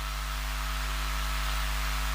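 Steady electrical mains hum with a constant hiss from the microphone and sound system, with no other sound.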